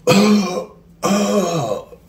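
A man's exaggerated, drawn-out yawning vocalizations: two voiced sighs, each under a second long, acted out as a lazy morning stretch.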